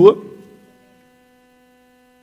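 A man's last spoken word trails off in the first moment, then a faint steady hum with several evenly spaced overtones holds unchanged.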